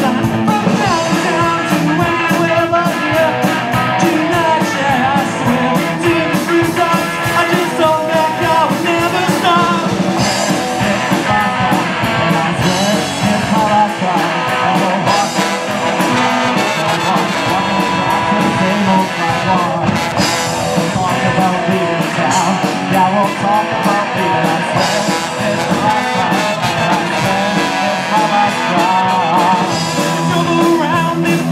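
A live rock band playing a ska-punk song: electric guitars, bass and drums, with trumpet and trombone horn lines.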